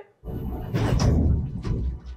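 Film sound effects of a train carriage being smashed open. A sudden loud crash breaks out with a heavy low rumble and crunching, cracking debris, and it runs on for nearly two seconds.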